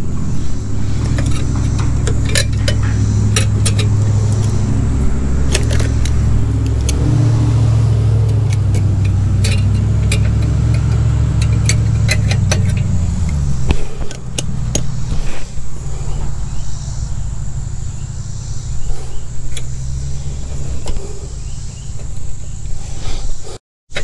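Light metallic clicks and clinks of pliers working a governor spring and its linkage wire on a small engine's carburetor linkage. These are heard over a steady low drone that stops about 14 seconds in.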